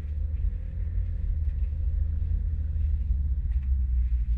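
Steady low rumble inside the cabin of a 2013 BMW X5 35d, whose inline-six diesel engine and tyres are running at low speed.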